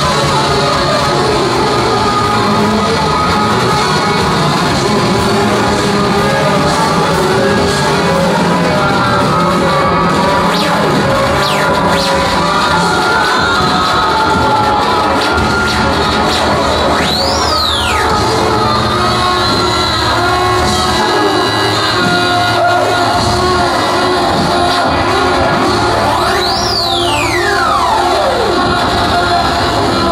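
Live rock band with saxophone and trombone, playing loud and dense without a break. Two high swoops fall steeply in pitch, one about halfway through and another near the end.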